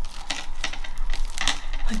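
Paper rustling in several short bursts as hands press and smooth a glued paper piece onto a scrapbook page.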